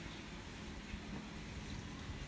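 Quiet, steady outdoor background noise with a low rumble, with no distinct sound events.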